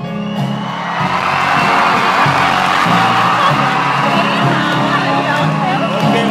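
Large concert crowd cheering and screaming at the end of a song, swelling about a second in, over a low sustained chord from the stage.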